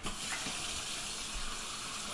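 Kitchen sink faucet turned on, water running steadily into the sink.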